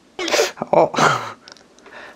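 A man's vocal reaction: a short, sharp breathy burst, then a drawn-out "eo" that falls in pitch.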